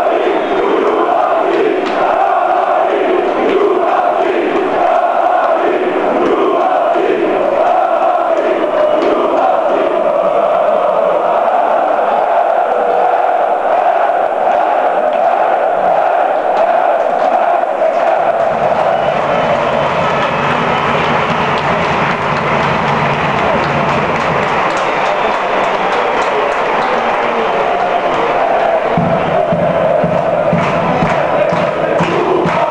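A large football crowd chanting in unison in the stands. From a little past halfway the rhythmic chant blurs into a more even crowd roar.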